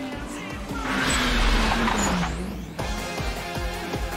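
Racing cars speeding past with a rush of engine and tyre noise about a second in, the engine note dropping in pitch as they go by. It cuts off suddenly near three seconds. Eurobeat music plays throughout.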